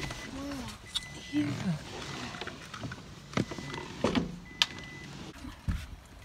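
Someone climbing out of a car: a series of sharp clicks and knocks from the car door and its latch being opened and shut, with a faint high beep sounding on and off.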